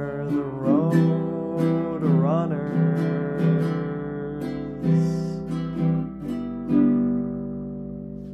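Acoustic guitar strumming chords, the last strum about seven seconds in left to ring out and fade.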